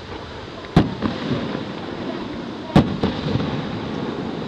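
Aerial firework shells bursting: two sharp bangs about two seconds apart, the second the loudest, followed closely by a smaller crack, each trailing off in an echo.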